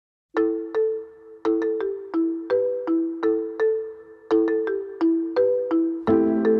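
Solo marimba playing a short, repeating melodic figure of struck notes that each die away quickly, starting about a third of a second in. This is the unaccompanied intro to a jazz track.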